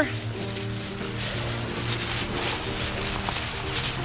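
Dry oak leaves and pine needles rustling and crunching as a hand scrapes and rakes through leaf litter in repeated strokes, over steady background music.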